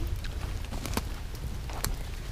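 Wood campfire crackling: a handful of sharp, irregular pops and snaps over a low rumble.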